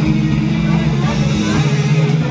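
Live rock band on stage, with electric guitar and bass holding low, sustained notes and voices over them.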